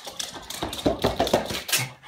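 A rapid, irregular run of sharp clicks and knocks, louder in the second half.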